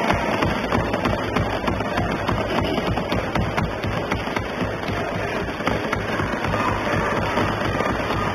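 Assembly members applauding by thumping their desks: a dense, steady patter of many knocks.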